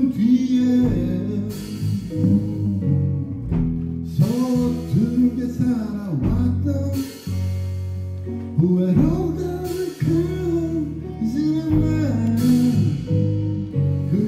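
A live rock band plays with several electric guitars over bass, keyboards and drums. The guitars play bending, wavering lead lines, with cymbal crashes and some singing mixed in.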